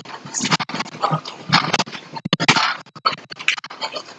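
Irregular bursts of scratchy rustling and scuffing from a person moving and dancing close to the microphone, with no steady beat.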